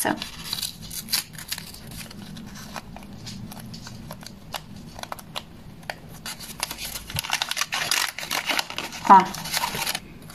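Small handmade paper envelope being unfolded and opened by hand: light crinkling and rustling of paper with many small crackles.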